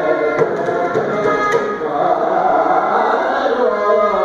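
Carnatic classical music: a male voice sings with violin accompaniment and a few mridangam strokes.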